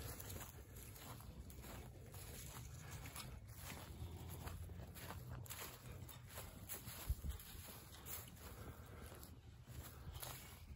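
Faint footsteps through dry pasture grass with a low wind rumble on the microphone, and one short thump about seven seconds in.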